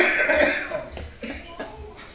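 A man coughing: one loud, harsh cough right at the start, followed by a few smaller ones.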